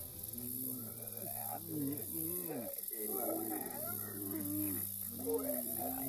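Several low, overlapping moaning voices, each rising and falling, over a steady low drone: the groaning of zombies approaching.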